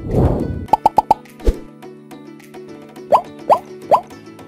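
Intro jingle for an animated logo: a swell at the start, then a quick run of four pops and one more, and three short rising blips near the end, over a held music chord.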